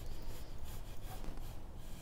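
Faint scratching of a scribe point scoring a line into the edge of a maple ukulele back.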